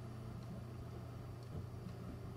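A steady low hum with a faint even hiss: the room's background noise between words.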